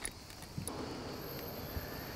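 Faint outdoor evening ambience with a thin, steady, very high-pitched insect tone, such as crickets, that sets in about a second in.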